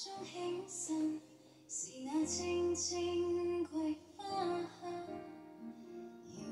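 A song with a female singing voice over instrumental backing, played through the two speaker cabinets of an AWA Dimensional Sound B96Z radiogram from around 1970.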